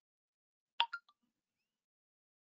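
Three quick clicks in a fraction of a second, about a second in, the first the loudest and each fainter than the last; otherwise silence.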